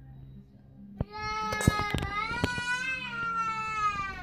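A long, drawn-out high-pitched vocal cry or whine. It starts about a second in and holds for about three seconds, rising slightly and then falling, with a few sharp clicks and knocks over it.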